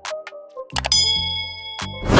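Subscribe-button animation sound effects: a few sharp mouse-style clicks, then about a second in a bright bell ding that rings on for about a second.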